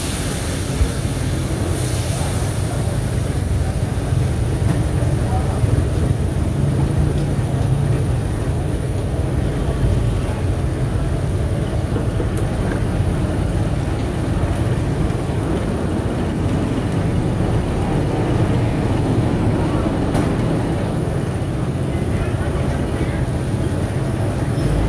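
Oyster-omelette starch batter frying in hot oil on a wide black pan: a steady sizzling hiss, brighter around the start as the batter spreads, over a steady low rumble, with a few light clinks of a metal ladle.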